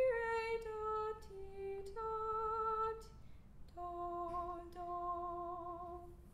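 A woman singing a slow phrase of held notes, stepping down in pitch and ending on a long low note with vibrato that stops just at the end.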